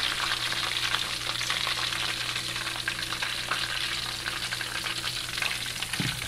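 Hot oil in a wok sizzling and crackling steadily around a deep-fried milkfish.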